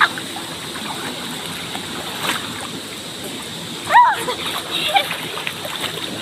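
Water splashing as people swim and wade in a river pool, over the steady rush of flowing river water. A short voice call rises and falls about four seconds in.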